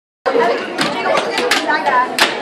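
Silence, then about a quarter second in, crowd chatter in a large hall cuts in, with several sharp clacks of hockey sticks striking the puck and the plastic box of a box hockey game.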